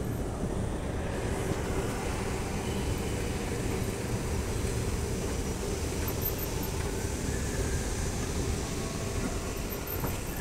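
2022 Hyundai S Series escalator running: a steady low rumble with a faint even hum from the moving steps and drive.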